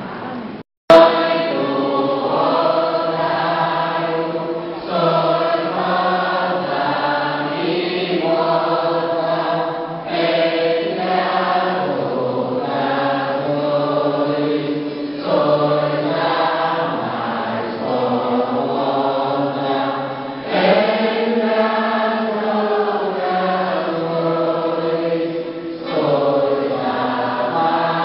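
A group of voices sings a hymn in long held phrases of a few seconds each. The sound drops out briefly with a click about a second in.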